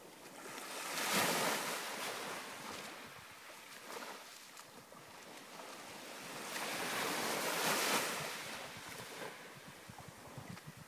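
Small waves washing onto a pebble beach, swelling twice: about a second in and again around seven to eight seconds in.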